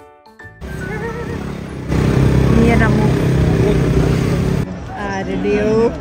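Short music notes end, then people's voices over a loud, noisy background, with a sudden cut near the end.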